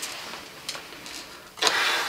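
Cloth ritual flags being swung close to the microphone: a continuous rustling swish, with a louder whoosh of fabric about one and a half seconds in.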